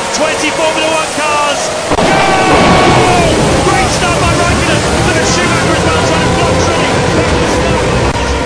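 Brief commentary, then about two seconds in a sudden loud burst of Formula One engines at full throttle as the field launches from a standing start, staying loud and dense.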